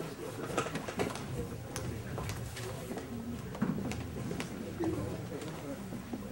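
Indistinct murmur of people talking in a room, with scattered light clicks and knocks.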